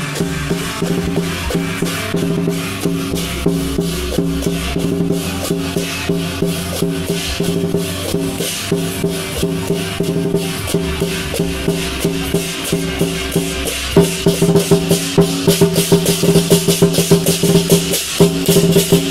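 Lion dance percussion band playing: rapid drum and cymbal strokes over a ringing gong. About fourteen seconds in, the strokes become louder and sharper.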